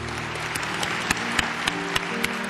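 Audience applauding: a dense spread of hand claps, with held background music notes sustained underneath.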